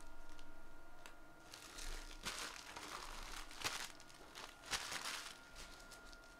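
Foil trading-card pack wrappers crinkling as hands move through the opened packs. Three sharp taps come about two, three and a half and four and a half seconds in.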